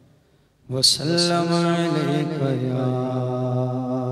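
Unaccompanied male voice reciting a naat in a chanting style. After a brief silence, the voice comes in a little under a second in with long held notes that waver slightly in pitch.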